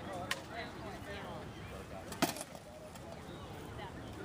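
Rattan sparring weapons striking in armoured combat: a sharp knock about a third of a second in, then a louder double knock a little past halfway, over faint distant voices.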